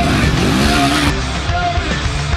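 Dirt bike engine revving, rising and falling in pitch as the bike rides through a berm, mixed with rock music with a steady beat. The sound changes abruptly about a second in.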